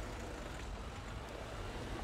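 A car's engine and tyres giving a steady low rumble as the car rolls up to the house.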